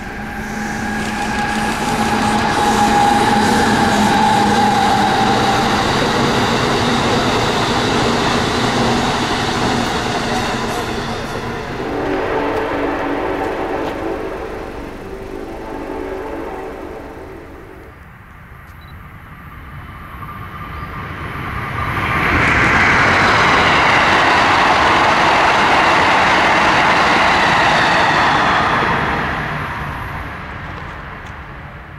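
Trains passing at speed on an electrified Northeast Corridor line, twice. The first pass carries a steady whine and ends with a chord of held tones for a few seconds before fading. The second, a loud rush, builds about two-thirds of the way in and cuts off near the end.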